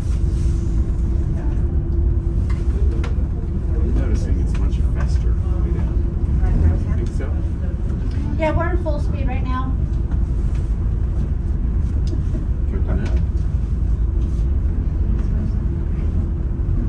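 Steady low rumble with a constant hum inside the moving aerial tram cabin. Brief voices come in about eight seconds in.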